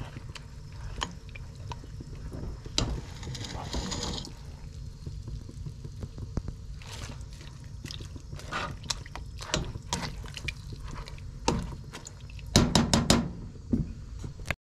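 Tea bags and cheesecloth being worked with a spoon in brown tea dye in an enamel pot: liquid sloshing and dripping, with scattered clicks and knocks and a quick run of louder knocks near the end.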